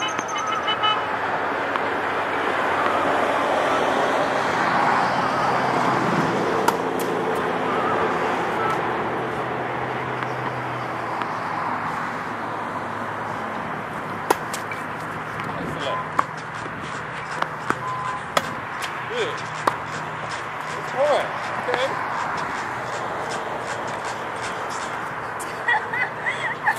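Tennis ball struck by a racket on a serve about halfway through: a sharp pop, followed by several more strikes and bounces spaced a second or two apart. Before that, a rushing noise with a low hum swells and then fades.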